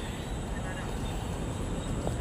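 Steady low hum of distant city traffic, with no distinct events.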